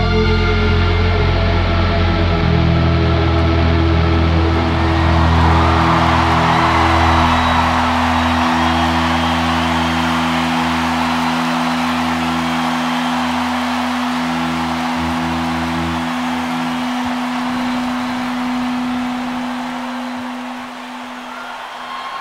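Live rock band letting a final sustained chord ring out. Held bass and synth notes drop away one by one and the sound slowly fades. From about five seconds in, a rising wash of noise sits under the held notes.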